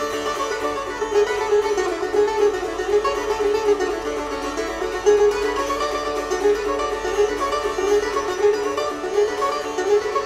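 Sitar played solo: a quick plucked melody whose notes slide up and down in pitch, over a steady ringing drone.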